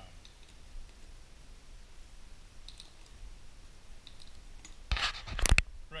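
Faint clicks and scratches of hand work with a small tool on a metal awning bracket, then a short cluster of loud clicks and knocks about five seconds in.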